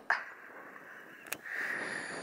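Faint wind and outdoor background noise, with one sharp click a little past the middle and a soft hiss coming in near the end.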